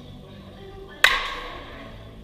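A baseball bat striking a pitched ball once, about a second in: a single sharp hit with a short ringing tail.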